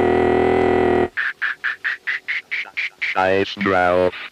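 Techno from a DJ mix: a held synth tone breaks about a second in into a rapid stutter of short stabs, about six a second, then gives way near the end to warbling notes that bend up and down in pitch, with a vocal-like, quacking quality.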